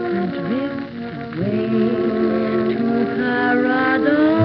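A 1935 dance orchestra, with brass, saxophones and violins, holding long sustained chords, with a short low sliding note in the first second. The sound is dull and lacks treble, as on an old 78 rpm record.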